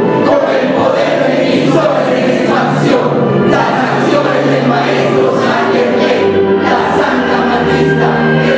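Group singing: a man's voice through a microphone leads, with other voices joining on long held notes that change pitch slowly.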